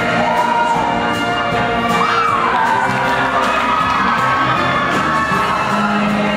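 A show choir singing with a live rock band while the audience cheers and shouts over the music.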